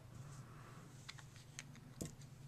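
Near silence: faint room tone with a few light clicks in the second half.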